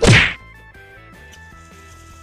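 A single sharp whack sound effect at the start, lasting about a third of a second, marking the cut to a title card, over faint background music.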